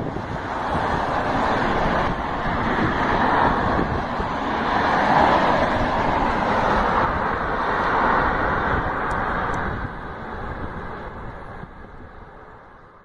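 Road traffic going by: a continuous rush of tyres and engines that swells and eases as vehicles pass, tapering off near the end.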